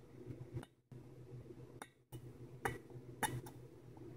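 A hobby knife's metal tip tapping and scraping on a drop of water frozen solid on a Peltier module's ceramic plate: a handful of light, sharp clicks spread over a few seconds, over a faint steady hum.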